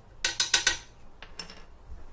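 About four quick metallic taps on a stainless steel stand-mixer bowl, each ringing briefly, as a measuring spoon is knocked against it to add salt. A couple of fainter clicks follow about a second later.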